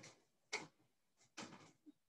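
Near silence broken by a few faint, short clicks.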